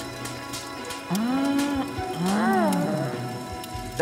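A cartoon log fire crackling in a fireplace. About one and two seconds in, two rising-then-falling gliding tones sound over it.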